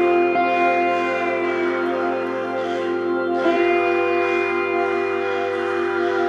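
Live progressive rock band music: sustained chords over steady low electric bass notes, the chord changing about halfway through.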